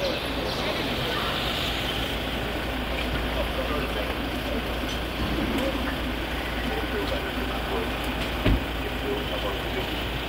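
A car engine idling with a steady low hum under the murmur of a crowd's voices. Near the end comes a single loud thud, a car door being shut.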